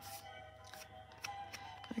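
Quiet background music with steady held tones, with a few faint taps of card stock being handled.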